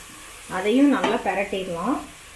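Masala of onions, tomatoes and spice powders sizzling in a stainless steel pressure cooker as it is stirred with a wooden spatula. Speech comes in over it about half a second in.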